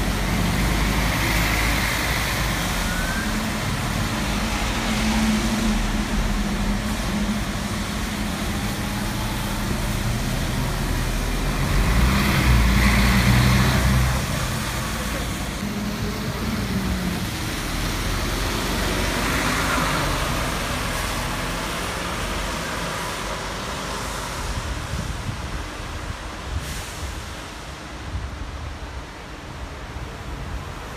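Mercedes-Benz city bus engine running as the bus pulls away and passes close, loudest about twelve to fourteen seconds in, then fading, with tyre hiss on the wet road.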